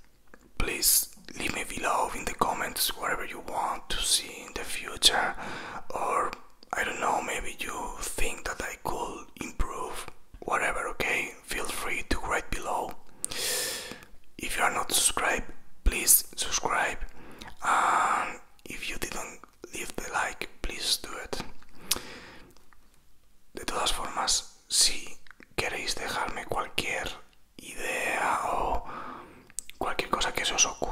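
A man whispering close to the microphone, in short phrases with brief pauses.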